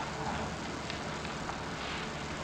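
Steady hiss with a faint low hum: the background noise of an old 1946 courtroom recording, with no distinct sound in it.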